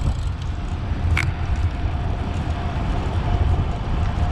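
Ride noise from a camera mounted on a moving bicycle: a steady low rumble of wind on the microphone and tyres on the road, with one sharp click about a second in.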